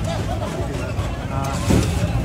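A motor vehicle engine runs steadily under people's voices out in the street.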